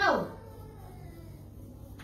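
A brief high-pitched vocal sound that slides steeply down in pitch at the very start, then a steady low hum of room noise.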